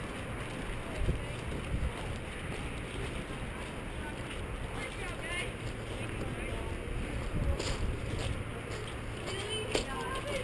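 Outdoor background of low wind rumble on the microphone with faint distant voices. A couple of brief knocks come near the end.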